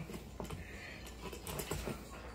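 Faint, scattered light clicks and taps of metal tools and parts at a seat base-plate hinge as a rod is fed through it, with a few more clicks near the end.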